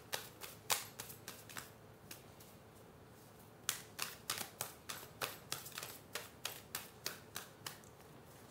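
A deck of tarot cards shuffled by hand, the cards clicking together about three times a second: a short run at the start, a pause of about two seconds, then a longer run.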